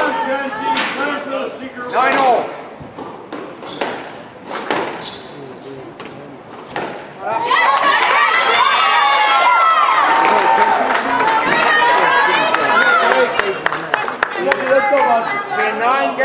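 Squash rally: a string of sharp smacks as the ball strikes rackets and the walls, echoing in an indoor court. Spectators' voices run over it and swell into loud, sustained crowd shouting about halfway through.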